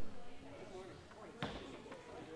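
Indistinct chatter of a congregation milling about in a large room, with a single sharp thud about one and a half seconds in.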